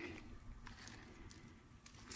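Quiet outdoor background: a faint low rumble with one faint tick a little under a second in.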